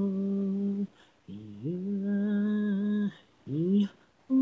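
Unaccompanied singing voice holding long notes. The first held note stops a little before one second in. After a short break the voice slides up into a second note and holds it for about a second and a half. Near the end it gives a brief upward slide.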